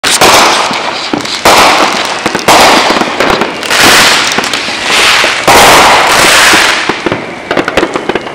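Aerial fireworks bursting overhead: about five loud bangs, one to two seconds apart, each trailing off in a dense crackle. They fade out near the end.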